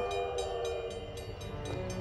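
Railroad crossing bell ringing rapidly, about four to five strikes a second, over a train horn sounding one steady chord.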